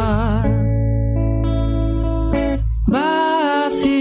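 A song playing: guitar accompaniment under a singing voice that holds long notes with vibrato.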